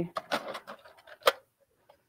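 Plastic accessory tray, loaded with presser feet, being taken off a sewing machine's free arm and set aside: a few light plastic clicks and knocks, the loudest about a second and a quarter in.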